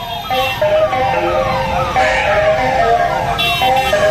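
DJ music played loud through a DJ truck's speaker stack, in a break without the bass beat: a siren-like synth sound falls in pitch over and over, about twice a second, over held tones.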